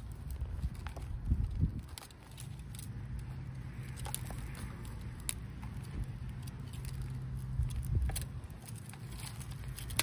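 Hands patting and pressing loose, dry potting soil with twigs in it into a plastic pot, giving scattered soft crackles and small clicks over a steady low rumble.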